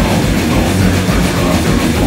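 A live heavy metal band playing loud: distorted electric guitars, bass guitar and a drum kit, with a rapid, continuous kick-drum beat underneath.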